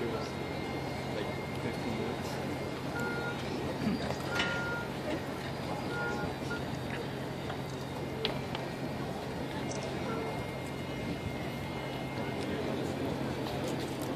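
Outdoor ambience: the indistinct murmur of a crowd of spectators over a steady hum of distant traffic, with a few faint short high tones and small clicks. No pipes or drums are playing.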